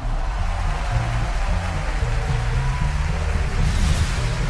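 Intro theme music with a deep, shifting bass line under a steady wash of sound. A swoosh sweeps through near the end.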